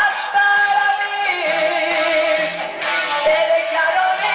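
Female singer performing a Latin pop ballad live over a band backing, holding long notes with vibrato.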